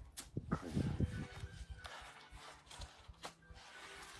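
Knife blade shaving a wooden stick being whittled into a toy sword: a few short, separate scraping strokes.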